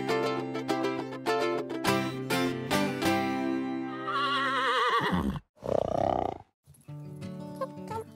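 Short logo-intro music jingle of pitched notes, broken about four seconds in by a horse whinny, a quavering call falling in pitch, with a short rougher sound just after; quieter music resumes near the end.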